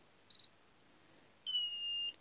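Electronic beeps from a Futaba T10CP radio transmitter and its OrangeRx DSMX/DSM2 module at power-on: a short high beep about a third of a second in, then a longer beep, slightly falling in pitch, from about a second and a half. The module's faint little beep signals that it is getting power from the transmitter.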